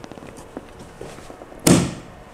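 Plastic DIN-rail mounting clip of an outdoor PoE extender snapping onto a metal DIN rail: one sharp snap near the end, after a few faint handling clicks.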